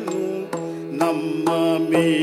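Yakshagana bhagavata singing a drawn-out, gliding melodic line over a steady drone, with a few sharp drum strokes.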